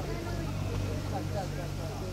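Steady low mechanical hum of a cable car ropeway, with faint voices talking in the background.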